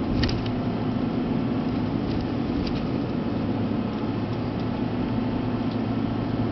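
Steady engine hum and road noise of a vehicle being driven, heard inside its cabin.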